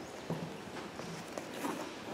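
A few soft, irregular knocks and clicks: handling and movement noise close to a microphone as a person shifts in his seat.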